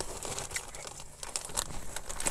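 Faint, scattered crisp crackling from eating Ruffles Flamin' Hot BBQ ridged potato chips.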